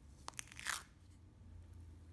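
Two quick light clicks, then a brief crackling crunch, as a stiff cloud-cream slime is handled in and pulled from its plastic macaron-shaped container.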